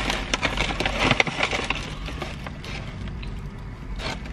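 Paper gift bag and packaging rustling and crinkling as items are rummaged out of it: a run of quick crackles, busiest in the first second or so and thinning out after that.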